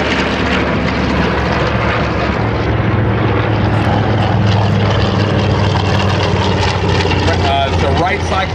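Grumman TBM Avenger flying past, its 14-cylinder Wright R-2600 radial engine and propeller giving a steady, deep drone that swells slightly in the middle.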